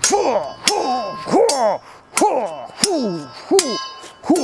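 Steel swords clashing blade on blade, about six strikes spread across a few seconds, each leaving a short metallic ring.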